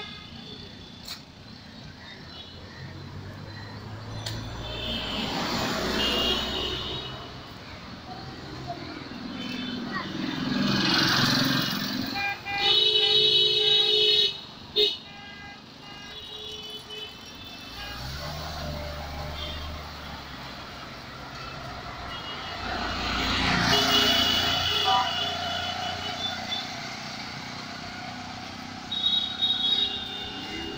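Busy street traffic: vehicles pass in repeated swells, a loud car horn blasts for about two seconds near the middle, followed by a short toot, and other higher-pitched horns sound now and then.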